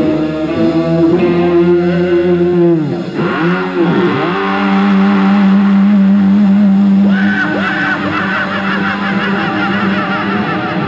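Distorted electric guitars of a live heavy metal band holding out a drawn-out ending, the sustained notes wavering and dipping in pitch in whammy-bar dives and feedback. About four seconds in, the band settles onto a new low held note that rings on with squealing overtones.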